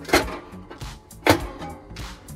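Two sharp plastic clacks about a second apart as the housing cover of a cassette gas heater is handled and shut after a gas cartridge has been loaded, over background music with a steady beat.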